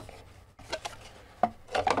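Cardboard packaging being handled as a box's inner cover is lifted off: a few light taps and scuffs of cardboard, two bunched together near the end.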